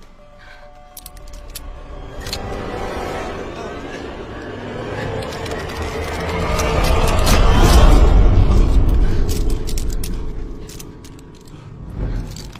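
A pulley trolley running along a rope line, its mechanical whir building to a peak about eight seconds in and then fading, with music playing over it.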